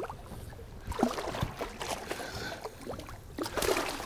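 Water splashing and sloshing against a boat's side as a hand works a hooked salmon at the surface to release it, in irregular splashes, the loudest about a second in and near the end.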